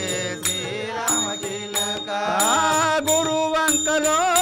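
Telugu devotional bhajan (tattvam): men singing to harmonium, with tabla and small hand cymbals keeping a steady beat.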